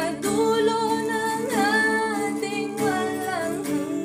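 A woman singing a slow Tagalog ballad in long, bending held notes, accompanied by acoustic guitar.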